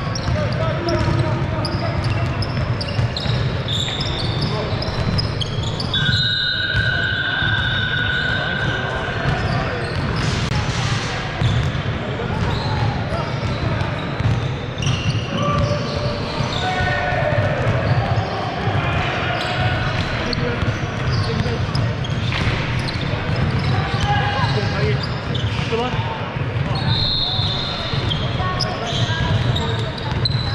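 Basketball being dribbled on a hardwood court in a large echoing hall, with players' voices calling out and high squeaks from shoes on the floor.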